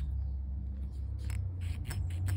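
Faint metallic ticks and scrapes of a 0.15 mm steel feeler gauge blade sliding between a camshaft lobe and the rocker arm of a Honda CRF250L cylinder head, checking the intake valve clearance, over a low steady hum.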